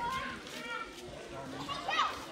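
Many children's voices chattering and calling out, with one loud high shout near the end.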